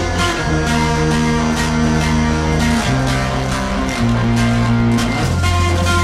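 Instrumental passage of a guitar-led rock song with no singing, its chords changing every second or two over a steady low bass.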